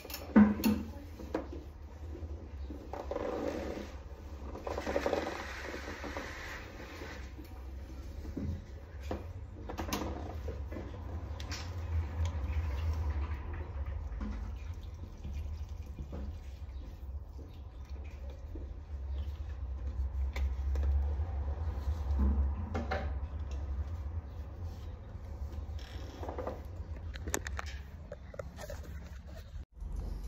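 Water poured from a clear plastic bottle into a potted peace lily's soil, splashing in short spells, with a few small knocks of the bottle being handled. A steady low hum runs underneath.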